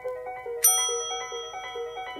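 Background music with a steady run of quick piano-like notes. About two-thirds of a second in, a single bright bell ding rings out and fades, the notification-bell effect of a YouTube subscribe-button animation.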